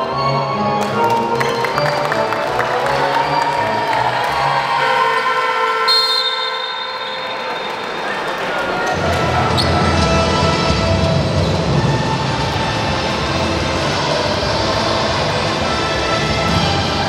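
Background music with sustained tones. The bass drops away around the middle and returns with a fuller, heavier low end about nine seconds in.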